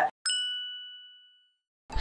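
A single bell-like ding sound effect, struck once and ringing away over about a second and a half.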